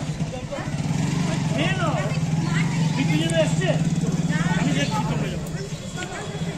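An engine running steadily close by, a loud low hum that sets in about half a second in and fades near the end, with people talking over it.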